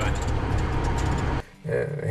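Old Opel Blitz truck heard from inside its cab while driving: a steady low engine drone with road noise. It cuts off about one and a half seconds in, and a man's voice starts just before the end.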